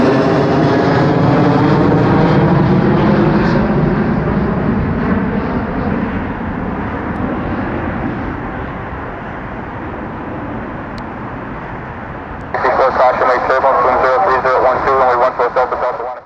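Jet engines of a four-engine Airbus A340 airliner running on the runway, loud at first with a wavering pitch, then fading steadily over about ten seconds as the aircraft slows and turns off. Near the end a louder, voice-like sound with a narrow, radio-like band cuts in abruptly.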